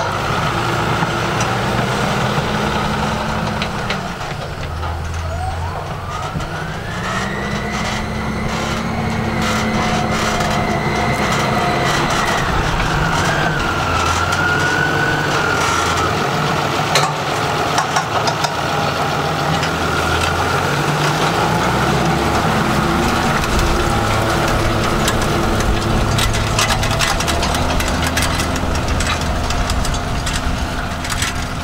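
John Deere 6140R tractor's six-cylinder diesel engine running under load while pulling a tine cultivator through dry soil. The engine note dips about four seconds in, then climbs back up over the next few seconds to a steady high whine.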